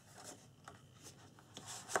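Faint rustling and rubbing of cardstock as a paper tag is handled over a scrapbook album page, with a few light ticks and a slightly louder rustle near the end.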